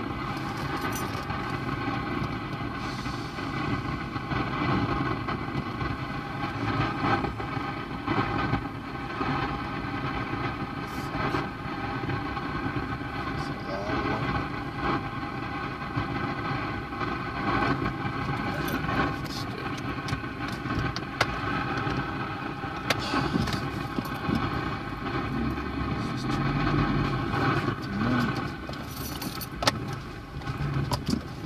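A car engine running steadily, heard from inside the car, with indistinct voices and a few small clicks over it.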